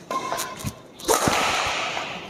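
Badminton shot with a Hi-Qua Smasher 9 racket: a sharp crack of the strings on the shuttlecock about a second in, then a rushing hiss that slowly fades, after a couple of faint taps.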